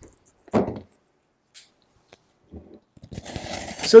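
Hands handling a taped cardboard shipping box: a single dull knock about half a second in, a few faint taps, then scraping and rustling on the cardboard in the last second.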